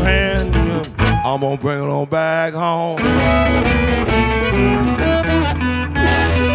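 Electric blues band playing an instrumental passage, electric guitar over bass and drums, with bent notes. The bass and drums drop out about two seconds in and come back a second later.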